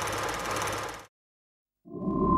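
A small-block V8 engine idling, then cut off abruptly about a second in, followed by dead silence.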